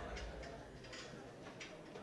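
Music dying away at the very start, then faint hall ambience with a few soft, irregular clicks.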